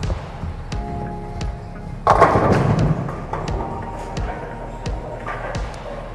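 Bowling ball crashing into the pins about two seconds in, then the pins clattering and dying away. The pins fall for a strike, the five pin going down on a lucky break.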